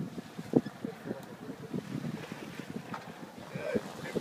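Wind buffeting the microphone aboard a sailboat under way, in irregular gusty thumps, the sharpest about half a second in.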